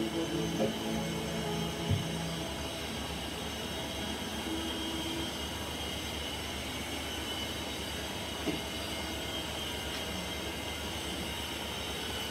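The last chord of a worship song on acoustic guitar and keyboard rings out and fades away over the first two seconds, with a couple of soft knocks. After that only a steady low hum remains.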